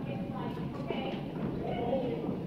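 Indistinct voices of several people talking in a large auditorium, with a light knock about half a second in.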